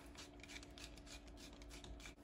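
Faint rubbing and light ticks of the timing plugs being unscrewed by hand from the engine's generator side cover, over a faint steady hum.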